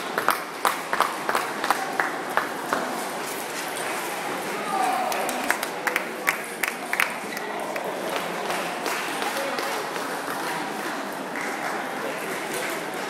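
Table tennis balls clicking sharply off bats and tables, about two a second for the first few seconds and scattered again around the middle, over the steady murmur of voices in a large, echoing sports hall.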